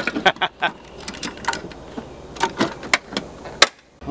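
Steel military ammo can being handled while a deck of cards is put in and the lid shut. A string of sharp metallic clicks and clanks ends in the loudest snap near the end, as the lid and latch close.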